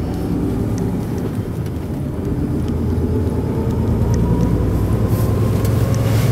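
Renault Trucks T 460 tractor unit's diesel engine, heard from inside the cab while driving, a steady drone that grows gradually louder and slightly higher in pitch over the last few seconds as the truck pulls along.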